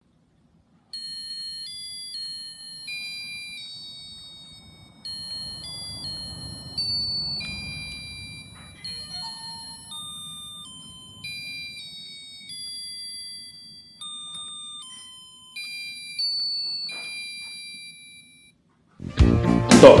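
Toy electronic mini piano played by hand: a simple tune of thin, high-pitched beeping notes, one at a time, stepping up and down. Near the end, much louder music starts.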